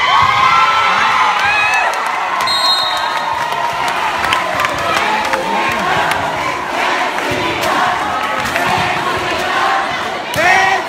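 Crowd of spectators cheering and shouting, many voices at once, with scattered sharp knocks.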